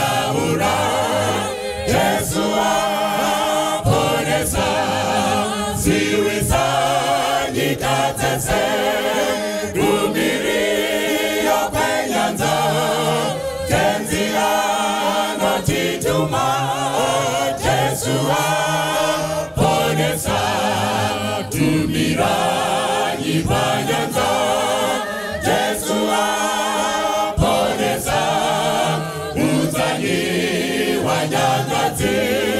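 Mixed church choir singing a gospel song, with male lead voices sung into handheld microphones out in front of the choir.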